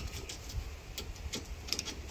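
Light metallic clicks and ticks, a few scattered through the two seconds, as a steel drowning-lock bracket and its trap chain are slid over the end of a rebar drowning rod.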